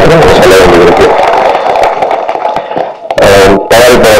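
A man speaking into a handheld microphone through a public-address system, with a short pause between about one and a half and three seconds in.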